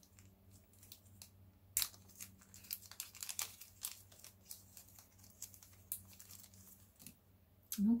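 Small clear plastic bag crinkling as it is worked open by hand. There is a sharp crackle about two seconds in, followed by a run of irregular crackles.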